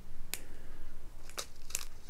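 Small clear plastic bag holding square diamond-painting drills crinkling as it is handled in the hand, with a few separate crackles, one about a third of a second in and a quick cluster near the end.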